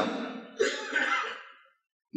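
A man clearing his throat once, about half a second in, between spoken phrases; the sound then cuts to dead silence shortly before the end.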